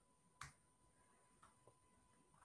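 Near silence broken by a few faint computer keyboard key clicks: one sharper click about half a second in, then two softer ones near the middle.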